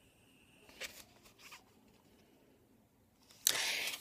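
Quiet room tone with a faint click and soft rustles from a hair-extension packet being handled, then a short, louder hiss near the end.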